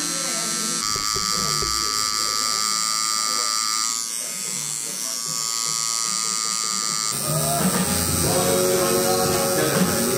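Tattoo machine buzzing steadily as it drives ink into skin; its tone shifts slightly at cuts about one and four seconds in. From about seven seconds, background music joins and grows louder.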